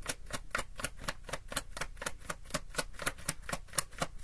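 A tarot deck being shuffled by hand, the cards clicking against each other in a fast, even rhythm of about seven clicks a second.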